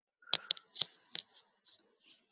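Computer mouse clicking: four sharp clicks within about a second, followed by a couple of fainter ones.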